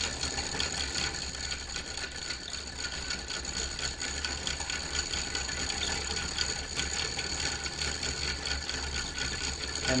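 Wooden gear train and ratchets of a Clayton Boyer celestial mechanical calendar running as its advance mechanism swings back, advancing the calendar one day. The sound is a steady stream of quick, light wooden clicks and ticks.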